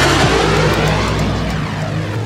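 Jet flyby sound effect: a loud rushing roar that fades away over about two seconds, over a low, steady music bed.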